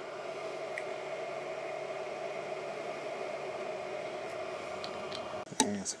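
Steady whir of a 3D printer's cooling fans, a Qidi Tech X-One2 running under its enclosure, with a low hum and a few faint ticks. It cuts off abruptly near the end.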